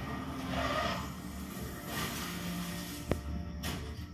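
Television soundtrack playing background music over a low steady rumble, with a sharp click about three seconds in and a brief hiss just after.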